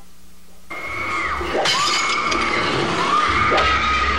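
Several long, high-pitched screams start about a second in, each held at one pitch. The first breaks off with a sudden drop.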